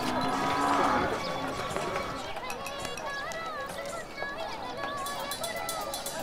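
Village street sound with cattle lowing, a low moo in the first second or so, over the murmur of people's voices. A run of quick ticks comes in near the end.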